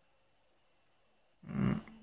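Near silence, then about a second and a half in a short, rough breath-like sound from a man, about half a second long.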